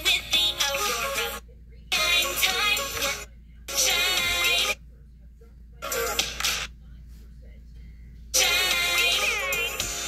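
A pop song with a singing voice, cutting out and starting again four times, with short silent gaps of about half a second to a second and a half between the bursts of music.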